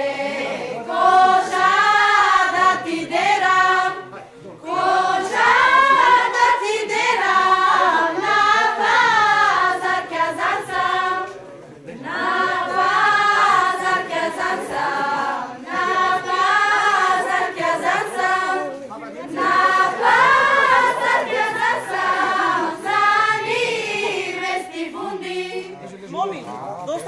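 A group of girls' voices singing a Macedonian folk song together, unaccompanied, in long phrases with short breaks about four, eleven and nineteen seconds in.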